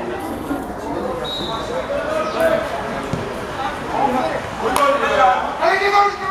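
Voices calling out on an outdoor football pitch, with a short, steady, high referee's whistle blast about a second in signalling the free kick, and a sharp knock near the end.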